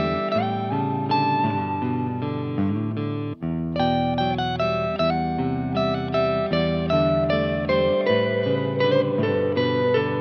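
Electric guitar with active pickups playing a clean picked phrase through a Mesa Boogie Dual Rectifier Tremoverb tube head and a 1x12 cabinet with a Vintage 30 speaker, a looped part running while the amp's knobs are turned. The notes ring one after another, with a brief gap about three and a half seconds in.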